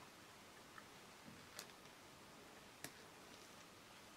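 Near silence with a few faint, short clicks, the clearest about one and a half and nearly three seconds in: metal side cutters handled against twin and earth cable while gripping the earth wire.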